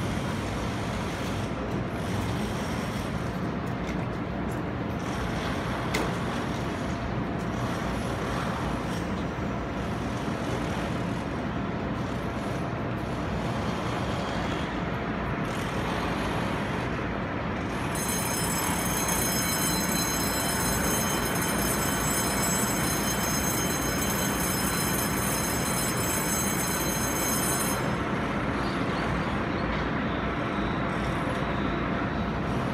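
A Taiwan Railways EMU600 electric train standing at the platform, its onboard equipment giving a steady hum and rumble. About two-thirds of the way through, a high multi-tone whine starts and runs for about ten seconds before cutting off.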